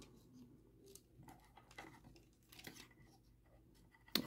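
Near silence with a few faint, short plastic clicks as the parts of a Transformers Studio Series Bonecrusher figure are handled and fitted together during its transformation to vehicle mode.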